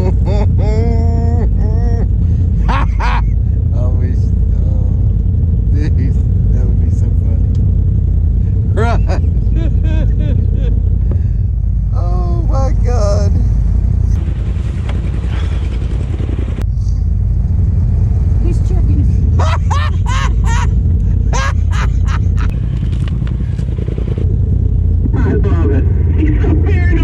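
Polaris RZR side-by-side engine idling with a steady low rumble, heard from the cab.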